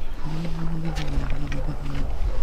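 Cat growling low and steady through its teeth as it chews a piece of raw fish held in a hand, one long growl that drops slightly in pitch partway through. A few short crunching clicks of chewing sound over it.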